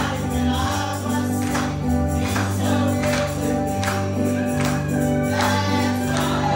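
Gospel song: a woman singing over an accompaniment of held bass notes, with a tambourine keeping the beat.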